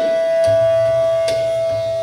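Bansuri flute holding one long, steady note over a few drum strokes from tabla and pakhawaj, with a deep ringing bass stroke about half a second in.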